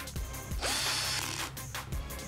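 Cordless drill whirring for about half a second as it drives a screw into a plastic plumbing pipe fitting, over background music.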